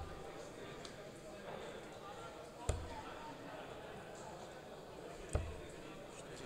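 Steel-tip darts striking a sisal bristle dartboard: two single sharp thuds, about two and a half seconds apart, over the low murmur of voices in a hall.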